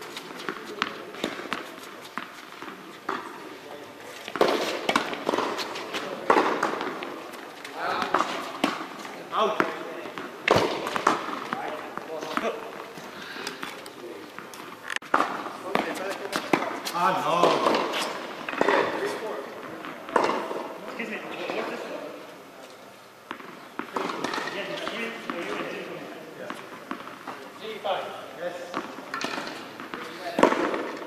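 Tennis balls being struck by rackets and bouncing on an indoor hard court: a string of sharp, irregular hits and bounces echoing in a large hall.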